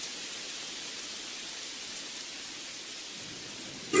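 Steady rain falling, a continuous even hiss with no breaks. A voice cuts in at the very end.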